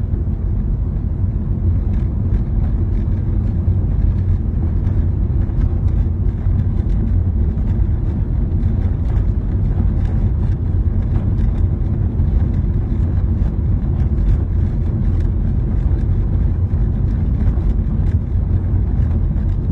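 Car driving on a wet road, heard from inside the cabin: a steady low rumble of engine and tyre noise.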